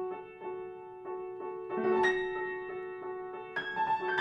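Grand piano played softly: a held chord with a note repeated about three times a second, and fresh chords struck about two seconds in and again near the end.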